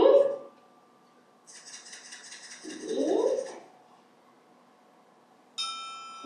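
Small percussion instruments played one after another for a timbre-discrimination exercise: a shaker rattles for about two seconds, with a short rising glide near its end, and then a struck metal instrument rings out with a bright, sustained tone near the end.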